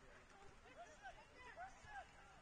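Faint, distant voices: several short calls and shouts over low background noise.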